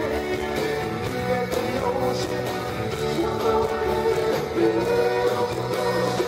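Live rock band playing loudly, with electric guitars and bass.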